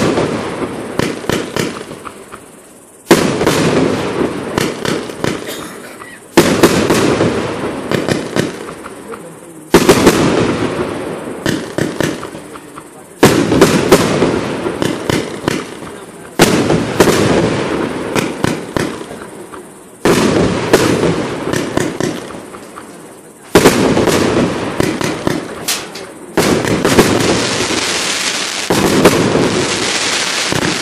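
A multi-shot consumer fireworks cake firing one shot about every three seconds, nine or so in all. Each shot is a sharp bang followed by a dense spray of crackling that fades before the next.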